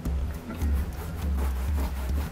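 Paintbrush scrubbing thick latex paint onto a plastic-coated mannequin leg in a run of quick rubbing strokes, over background music.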